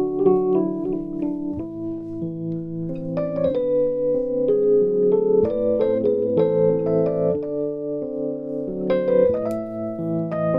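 Electric piano playing a slow instrumental passage: held chords with a melody of single notes on top, with no singing.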